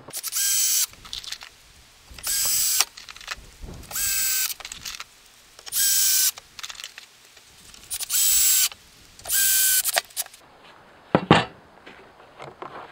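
Cordless drill-driver driving screws into plywood, in six short bursts of motor whine with pauses between. A sharp knock comes near the end.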